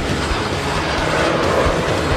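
Boeing 777X's GE9X turbofan engines on landing approach: a steady rumble with hiss as the airliner comes in low over the runway.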